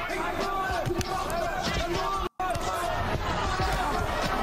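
Fight footage audio from a kickboxing bout: thuds of kicks and punches landing over the shouting of an arena crowd. The sound cuts out for an instant a little after two seconds in.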